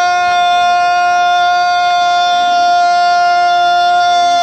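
One loud note held at a perfectly steady pitch, with many clear overtones, over faint crowd noise.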